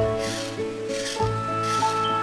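Felt-tip marker scratching on paper in repeated short colouring strokes, about one every half second, over background music with held notes and a low bass line.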